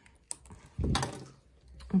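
Light handling sounds: a sharp click, then a brief rustling thump about a second in, as fingers work the small plastic tubing and the bag's metal hardware.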